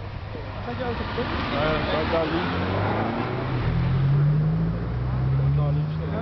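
A car engine accelerating, its note climbing slowly in pitch over the last few seconds and loudest around the middle, over indistinct chatter of people nearby.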